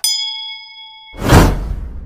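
Subscribe-animation sound effects: a mouse click and a bright notification-bell ding that rings for about half a second, then a loud whoosh swelling in about a second later.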